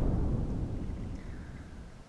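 The low rumbling tail of a loud boom, fading steadily and then cutting off sharply at the end.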